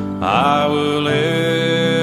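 A hymn sung with musical accompaniment. About a quarter of a second in, a voice slides up into a long held note.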